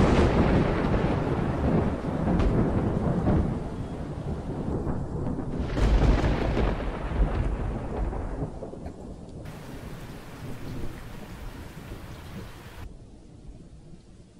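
Thunder over steady rain: a loud peal at the start and a second one about six seconds in, each rumbling away into the rain.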